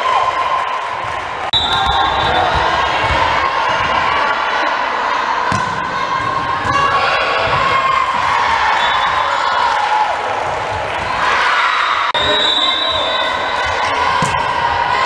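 A volleyball bouncing on a hardwood gym floor a few times, over the steady chatter and calls of players and spectators.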